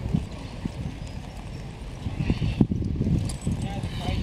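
Hooves of a Clydesdale heavy horse thudding on dry, loose tilled soil as it walks pulling a plough, with scattered knocks and a louder knock about two and a half seconds in.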